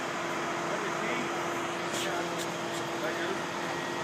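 Mobile crane's engine running steadily with a constant hum while it holds a roller-coaster car aloft, with three sharp clicks about halfway through.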